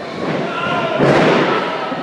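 A wrestler's body hitting the ring mat with a loud thud about a second in, echoing in the hall, over spectators' shouts and chatter.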